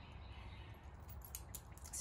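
Faint, scattered clicks of metal collar hardware (clips, rings and prong links) being handled on a dog's collar.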